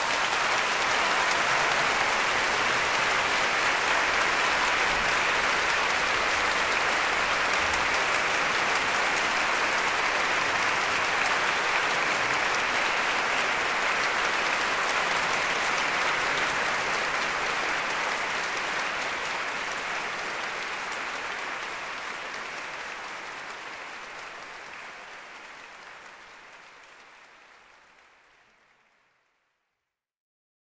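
Audience applauding: dense, steady clapping that fades away gradually over the last dozen seconds to silence.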